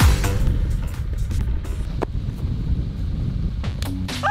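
A deep thump at the start, then low, rumbling background music dominated by bass.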